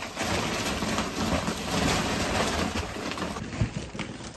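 Continuous rustling and crinkling of a large plastic Christmas tree storage bag being pulled out of a storage hatch, with a sharp knock near the end.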